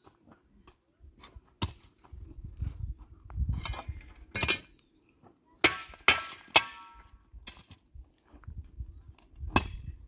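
Pickaxe striking stony soil: a series of sharp metal-on-stone strikes, some ringing briefly, with scraping of dirt and gravel between them. Three strikes come close together about six seconds in, and another near the end.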